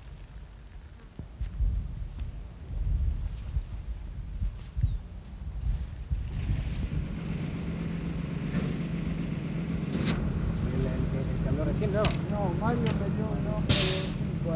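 Wind buffeting the microphone in uneven gusts, then a truck engine idling with a steady hum, distant voices and a few sharp knocks, the loudest near the end.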